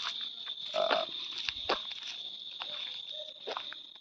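Crickets chirring in one steady high drone, with irregular soft clicks and rustles of footsteps in dry forest undergrowth, and a brief low sound about a second in.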